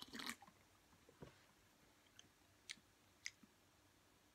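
A short, quiet sip of energy drink from an aluminium can right at the start, then a few faint mouth clicks as it is tasted.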